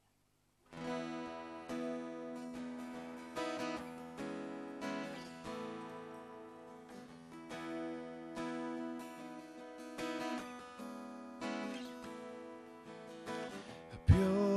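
Steel-string acoustic guitar playing a slow instrumental introduction to a hymn, chords starting just under a second in and ringing on through each stroke.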